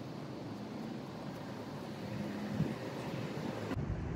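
Steady, fairly low background noise of road traffic, with no distinct strokes or knocks.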